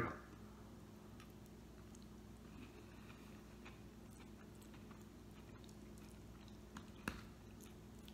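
Faint chewing of a mouthful of noodles and stir-fry over a low steady room hum, with one sharp click about seven seconds in.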